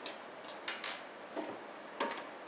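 A few irregular light clicks of a Torx screwdriver working the case screws at the back of a TiVo Series 2's metal housing.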